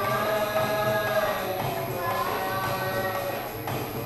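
A devotional Hindi song (pad) sung in long held, gliding notes, accompanied by an electronic keyboard.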